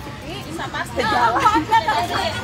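People chatting, the talk getting busier about a second in.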